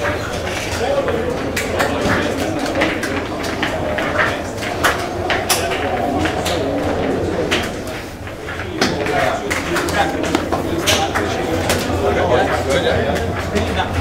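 Crowd of footballers in a tunnel: many overlapping voices talking and calling out, with frequent sharp clicks and knocks throughout and a steady low hum underneath.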